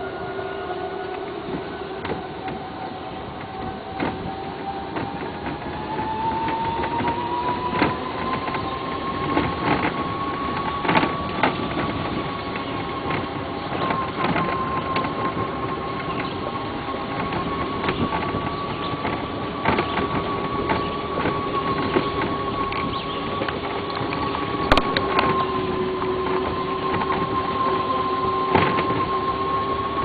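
ATV (quad) engine running while riding, its pitch rising over the first ten seconds or so and then holding steady, with scattered knocks throughout.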